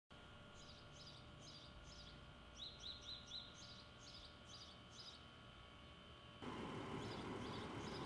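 Faint bird chirping, short calls repeated about twice a second with a few louder rising chirps near the middle, over steady faint tones. About six seconds in, a louder hiss of outdoor ambient noise comes in under the birds.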